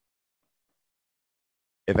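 Near silence, with a man's voice starting just at the end.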